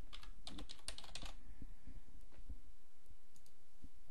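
Typing on a computer keyboard: a quick run of keystrokes in the first second or so as a password is entered, then a few scattered clicks.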